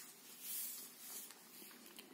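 Faint rustle of a crocheted wool-blend shawl being handled and spread out on a table, swelling briefly about half a second in.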